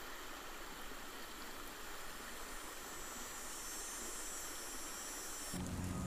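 Faint, steady hiss of river water running over shallows. A lower rumble of outdoor ambience comes in near the end.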